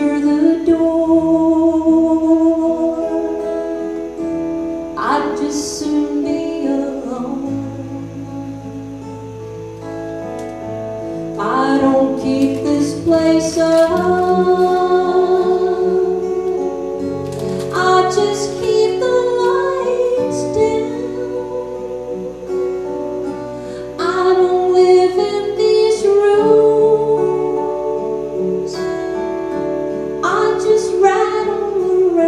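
Live acoustic country-folk song: a woman sings lead over two strummed acoustic guitars and an electric bass guitar, the phrases rising and falling in loudness.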